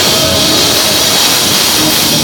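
Loud live band music played through a venue sound system, dense and continuous.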